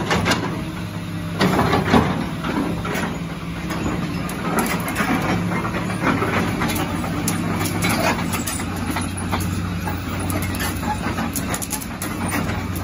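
Caterpillar 320B excavator's diesel engine running steadily at idle, with a few knocks in the first three seconds.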